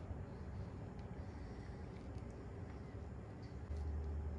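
A steady low hum with a few faint, light ticks; the hum gets louder near the end.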